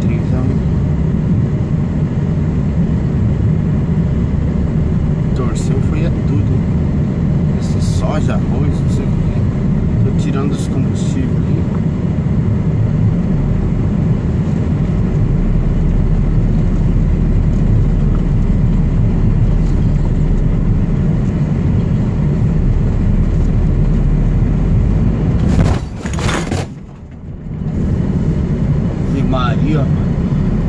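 Truck cab noise while driving: a steady low engine and road rumble with a few scattered knocks and rattles. About four seconds from the end a sharp bang as the truck hits a pothole, after which the sound briefly drops away.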